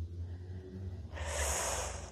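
A woman's audible breath in, a smooth hiss starting about a second in and lasting just under a second.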